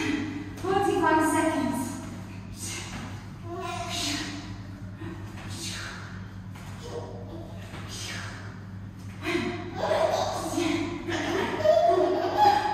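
Wordless baby vocalising, babbling and cooing near the start and again near the end, with breathy sounds about once a second in between.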